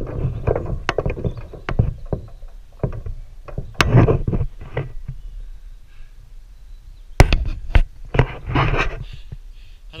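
Handling noise from an action camera being moved about and held against a chain-link fence: irregular knocks, scuffs and rustling. It is busiest in the first half, quieter for a couple of seconds, then comes two sharp knocks and more scuffing.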